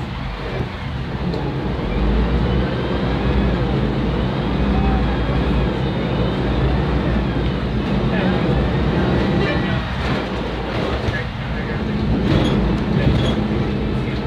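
Volvo B10M bus's inline-six diesel engine running loud under way: a steady low drone that eases briefly a few times, with a faint high whine rising and falling above it.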